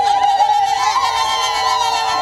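A crowd of women singing together as they walk, many high voices holding long, steady notes.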